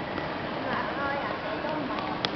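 Small wheels of a child's rolling suitcase rattling along a hard floor, with light footsteps in a steady clatter. Faint voices sit in the background.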